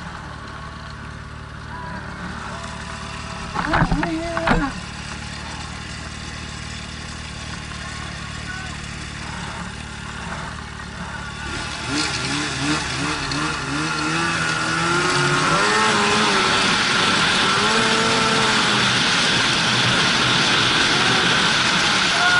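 Two-stroke or four-stroke snowmobile engines idling while stopped, then revving up and pulling away about twelve seconds in, settling into a louder steady run at trail speed.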